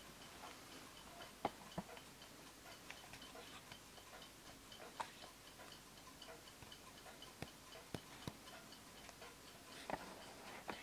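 Faint, even ticking of a circa-1880 Winterhalder & Hofmeier drop-dial regulator wall clock's deadbeat double-fusee movement running. A few louder, irregular clicks fall among the ticks, the loudest about one and a half seconds in.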